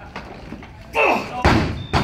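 Barbell loaded with Eleiko bumper plates dropped onto the lifting platform after a missed snatch: a heavy thud about halfway through, followed by a second, smaller impact as it bounces.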